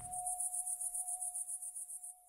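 Outro logo sound: a high, rapid insect-like chirring, about ten pulses a second, over one steady held tone.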